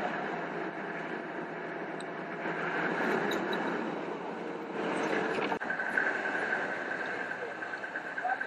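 Steady engine and road noise inside a moving car's cabin.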